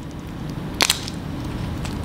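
Snow crab shell cracking as it is broken apart by hand: one sharp crack just under a second in, with a few faint clicks of shell.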